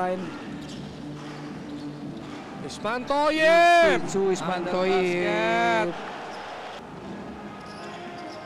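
Live basketball court sound: a ball bouncing on the court, with a loud, drawn-out voice call that rises and falls about three seconds in and a second, shorter call about five seconds in.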